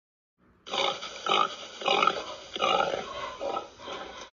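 Domestic pig grunting: a run of about five short grunts, starting just under a second in.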